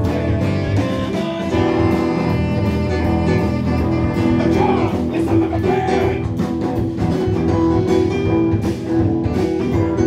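Live band playing: electric guitar, electric bass, keyboards and drum kit, at a steady loudness.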